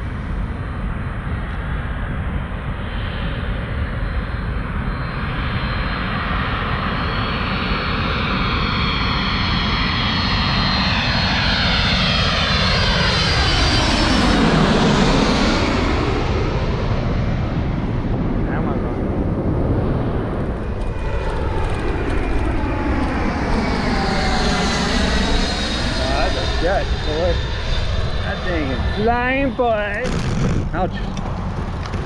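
Jet airliner passing low overhead, growing louder to a peak about halfway through with a swirling whoosh as it goes over, then fading away.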